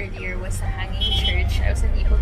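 A woman talking inside a van's cabin over the steady low rumble of the vehicle's engine and road noise.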